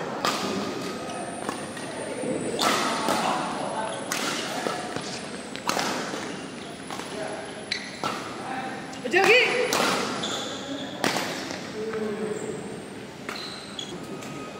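Badminton rackets striking a shuttlecock in a fast rally: sharp hits about once a second, echoing in a large indoor hall, with players' voices in the background.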